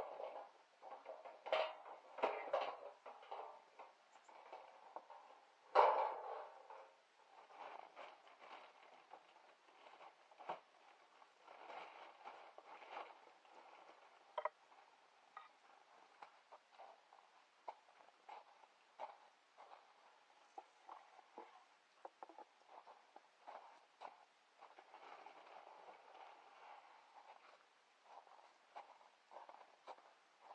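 Faint handling noises as bird seed is scooped out of galvanized metal bins: scattered clicks and rustles, with louder rustling bursts near the start and about six seconds in.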